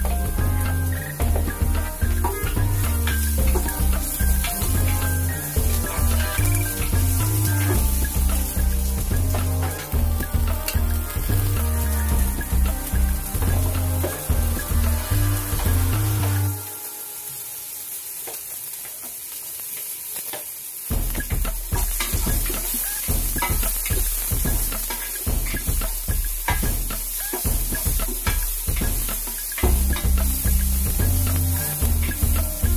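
Sliced garlic, onion and ginger sizzling in hot cooking oil in a pot, under background music with a heavy bass beat. The music drops out for about four seconds just past the middle, leaving the sizzle alone, then comes back.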